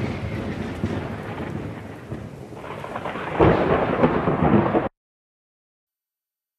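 Thunder-like rolling rumble with a rain-like hiss, laid over the opening title as a sound effect. It fades, swells again about three and a half seconds in, then cuts off suddenly about five seconds in.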